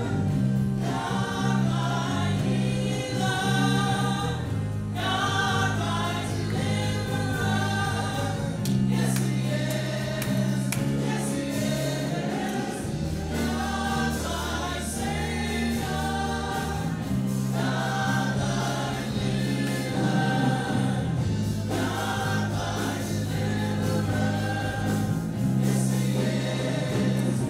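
Live worship band playing a gospel-style song: several voices singing together over guitars and long, held low notes.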